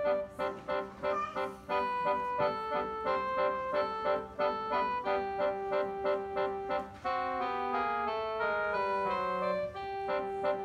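Electronic keyboard played solo by a child, sounding sustained notes in a repeated chord pattern that gives way to a run of moving notes about seven seconds in.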